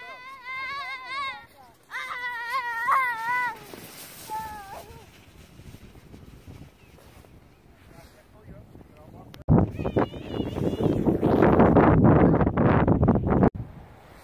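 A child squealing, high and wavering, in two long stretches over the first few seconds. About ten seconds in, a loud rushing noise starts suddenly, runs about four seconds and cuts off abruptly; it is the loudest sound.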